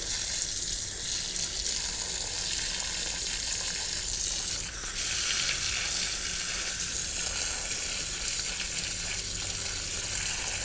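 Water spraying from a pistol-grip garden hose nozzle onto potted trees, a steady hiss. The spray dips briefly about halfway through and comes back a little stronger.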